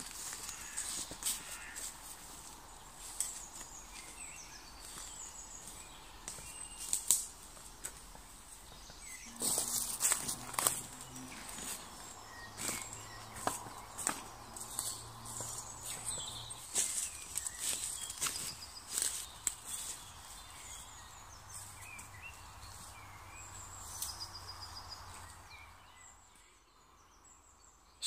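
Footsteps through leaf litter and woodland undergrowth, with small birds chirping and singing throughout.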